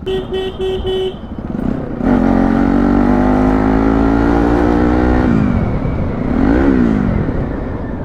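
A few quick horn beeps, then a Bajaj Pulsar NS 200's single-cylinder engine pulling away: its pitch climbs steadily for about three seconds, drops suddenly at a gear change, then rises and falls once more briefly.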